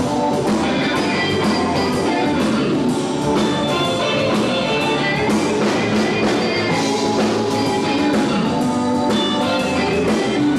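Live blues band playing a steady number: electric guitars over bass, drum kit and keyboard.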